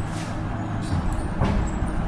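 Low, steady rumble of vehicle traffic, with a brief louder swell about one and a half seconds in.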